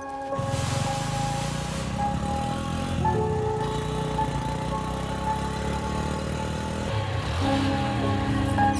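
Film background music of steady held notes over busy street ambience, with road-traffic noise coming in about half a second in.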